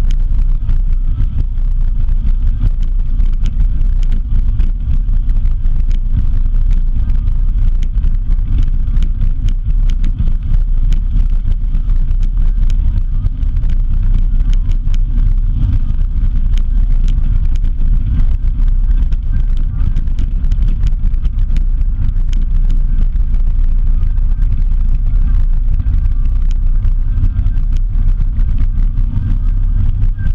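Steady low rumble of a vehicle moving along a road, with wind on the microphone and many small ticks and knocks throughout.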